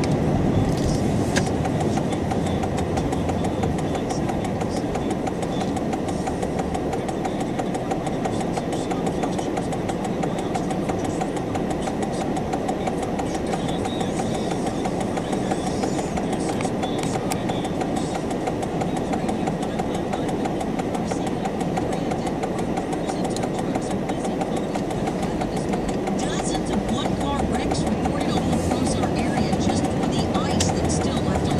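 Steady road and engine noise of a car being driven, heard from inside the cabin, rising a little near the end.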